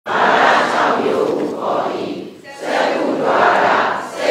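Many voices speaking together in unison, a group recitation in long swelling phrases, with a short break about two and a half seconds in.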